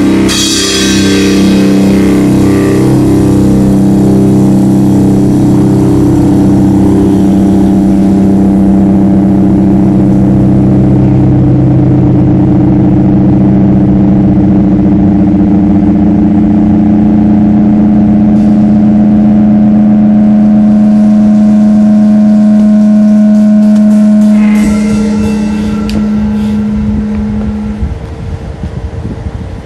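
Instrumental heavy rock ending: a last drum and cymbal crash, then a distorted electric guitar chord held and ringing on. Near the end the chord breaks off into amplifier noise and hum as the level falls.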